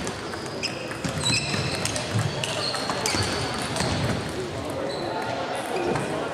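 Table tennis balls clicking irregularly off tables and bats at several tables at once, echoing in a large sports hall, with voices in the background.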